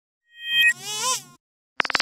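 Reversed, pitch-shifted and effects-processed children's-show logo jingle: a high, buzzy warbling phrase about a second long, with a few steady high tones under it. It stops, and a run of rapid clicking pulses starts near the end.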